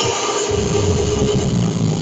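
Loud electronic house music over a festival sound system. The regular kick drum drops out and, about half a second in, a sustained low bass drone comes in under a held higher tone.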